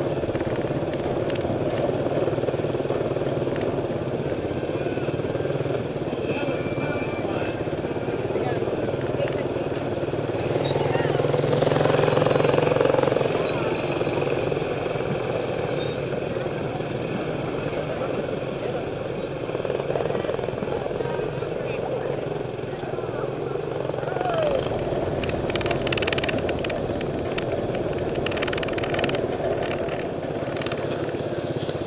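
Several small step-through motorcycles running at low parade speed, a steady engine drone that swells louder for a couple of seconds near the middle.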